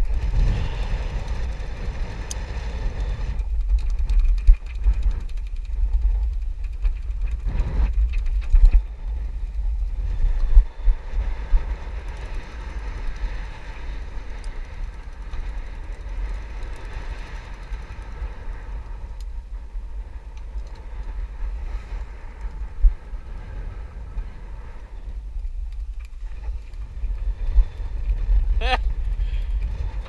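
Strong wind buffeting the microphone with a deep, steady rumble over the hiss of wind and sea, with a few knocks and rustles as a canvas hatch cover is handled.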